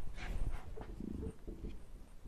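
Marker pen writing on a whiteboard, with a short pitched squeak or whine about a second in.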